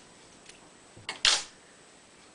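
Scissors snipping through the corded fibres of a grooming model dog's coat: one short, sharp snip a little over a second in, after a faint click.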